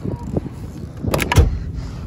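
Car door being shut: two sharp knocks a little over a second in, the second a heavy, deep thud as the door latches.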